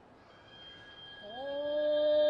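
Kabuki dance accompaniment: after a quiet lull, a voice slides up in pitch about a second in and settles into one long held note that swells louder.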